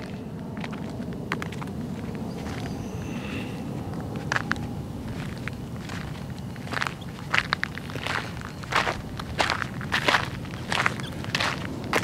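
Footsteps on a gritty asphalt road, irregular steps starting about four seconds in, over a faint steady low rumble.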